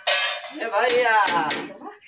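The latch of a steel door being rattled, giving a few sharp metallic clinks.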